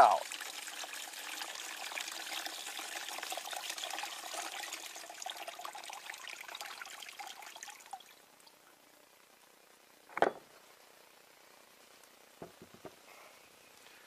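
Battery acid pouring out of the open cells of a car battery tipped over a plastic tub, a steady splashing stream that tapers off and stops about eight seconds in. A single short knock about ten seconds in, then a few faint clicks.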